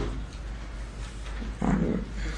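A woman's short, low moan about a second and a half in, the loudest sound here, after a brief sharp click at the very start.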